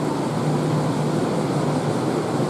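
Steady railway-platform background: a constant low hum over an even haze of noise, with no distinct events.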